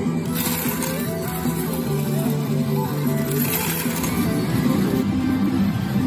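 Metal pachislot medals clinking and clattering as a handful of winnings is moved into the machine's side pocket, over music.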